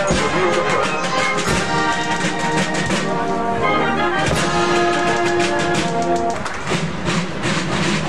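Marching band playing live: brass (trombones and sousaphone) sounding held notes over a steady drum beat. The brass breaks off about six seconds in while the drumming goes on.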